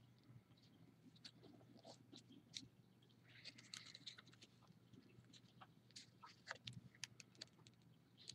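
Faint rustling and small clicks of paper being folded and creased by hand, with a brief soft crinkle about three and a half seconds in, over a low steady hum.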